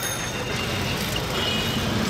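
Busy street traffic heard from a moving cycle rickshaw: a steady rush of road and vehicle noise.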